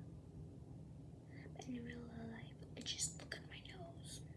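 A girl whispering quietly to herself, with a short hummed "mm" about halfway through and a few soft whispered sounds near the end.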